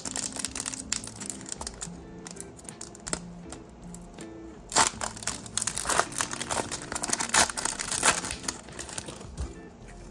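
Foil trading-card pack wrapper crinkling and tearing open in the hands, with sharper crackles about five and seven seconds in, over background music.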